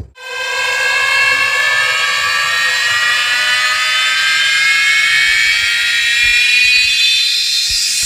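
A loud synthesized rising tone, a DJ build-up sweep, played through a huge stacked disco mobile speaker system; it starts after a brief cut, climbs slowly and steadily in pitch like a siren, and carries no bass.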